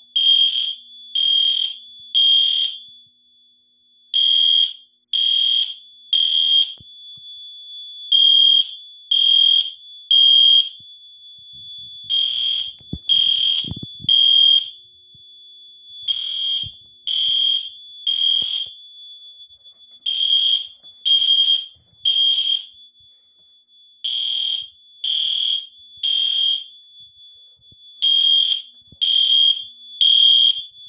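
EST Genesis weatherproof fire alarm horn sounding the temporal-3 evacuation pattern: a loud high-pitched beep three times, then a short pause, repeating about every four seconds. A faint steady tone at the same pitch carries on between the beeps.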